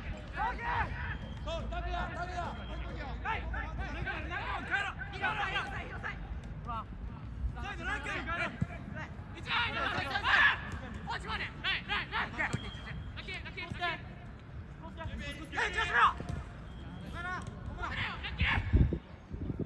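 Players' voices shouting calls to each other during a football match, in a few louder bursts between quieter talk.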